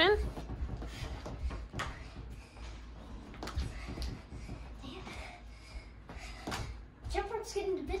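A child skipping rope on carpet: soft, muffled thuds of feet landing and the rope striking the floor, with a few sharper clicks. A child's voice starts near the end.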